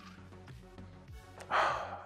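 A person taking one loud sniff, smelling a freshly opened bottle of Baileys Irish cream, starting about one and a half seconds in, over faint background music.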